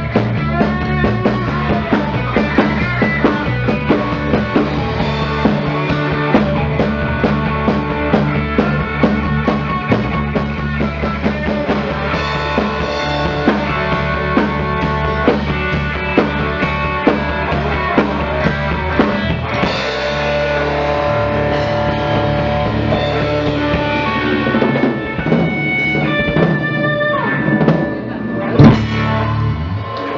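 Live rock band playing: electric bass, Fender Stratocaster electric guitar and drum kit together in a steady groove. The music breaks up near the end with a loud final hit.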